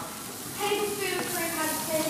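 Chopped onion, garlic and ginger frying in a pan, sizzling steadily as they are stirred with a spatula.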